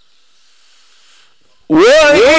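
A quiet pause, then a male Quran reciter's chanting voice in melodic mujawwad style starts loudly near the end on a rising, held note.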